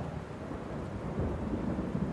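A low, rumbling wash of noise like thunder and rain, slowly swelling up: the opening of a background music track.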